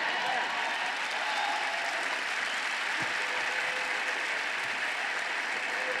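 Large audience applauding: a dense, steady round of clapping that holds at an even level throughout.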